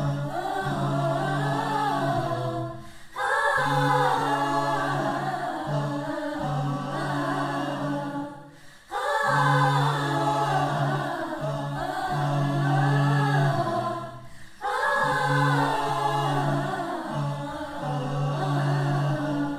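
Mixed choir singing a cappella: moving upper voices over steady, held low notes. The phrases break off briefly three times for breath.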